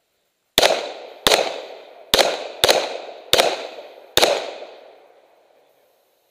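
Six pistol shots fired at a steady pace, about two-thirds of a second apart, each trailing off in an echo. This is a box drill: two shots to each of two targets' bodies, then one to each head.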